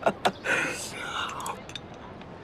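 A man's laughter trailing off, then a soft, breathy whisper-like sound, with a few faint clicks near the end.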